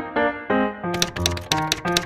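Upbeat background music with a rapid run of typing clicks in the second half, about ten keystrokes in a second, as text is typed into a search box.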